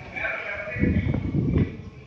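A person's voice through a loudspeaker, echoing in a large hall.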